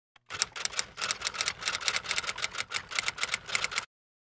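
Typewriter keys striking in a quick, steady run of about six clacks a second, stopping suddenly just before the end: a typewriter sound effect typing out an on-screen title.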